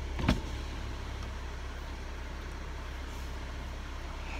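Steady low hum inside a car cabin, with a single thump shortly after the start.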